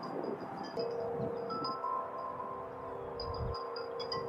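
Chimes ringing: a steady held tone comes in about a second in, with higher tinkling notes repeating over it.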